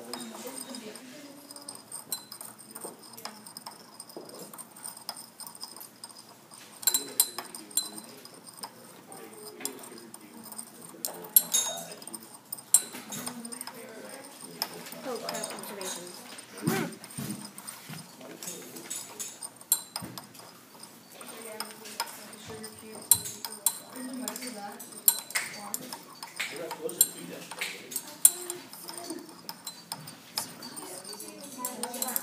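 A stirring rod clinking irregularly against the inside of a glass beaker as sugar is stirred into water to dissolve it, with people's voices in the background.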